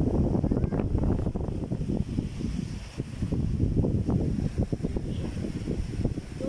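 Wind buffeting the phone's microphone: a loud, uneven low rumble that flickers and surges with the gusts.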